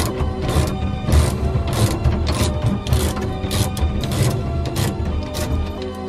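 Hand ratchet with a 19 mm socket clicking as it is worked back and forth to unscrew the steering wheel hub nut after it has been broken loose, over background music.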